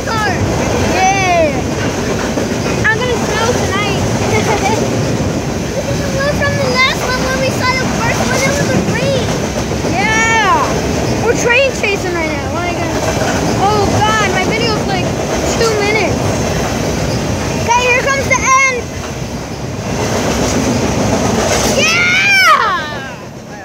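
CSX freight train's flatcars loaded with garbage containers rolling past at close range: a steady loud rumble of wheels on rail. Many short, high squeals that rise and fall sound over it.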